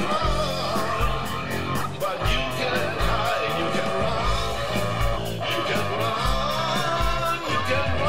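Blues-rock band playing with a steady beat: an electric guitar line with bending notes over bass and drums, and no words sung.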